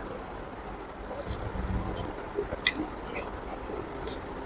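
Close-up mouth sounds of a person eating rice and pork by hand: chewing with wet lip smacks and short sharp mouth clicks, one louder click about two-thirds of the way through.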